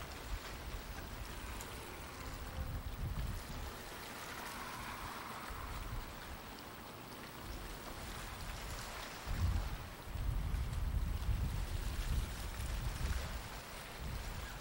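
Wind buffeting the camcorder's microphone in uneven low gusts, strongest from about nine and a half seconds in, over a faint steady hiss of open outdoor air.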